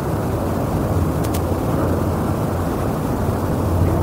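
A steady low rumble and hiss with no speech: the background noise of the lecture recording in a pause between sentences, with a faint click about a second in.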